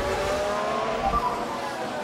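A Formula 1 car's turbocharged V6 engine note rising steadily in pitch as the car accelerates.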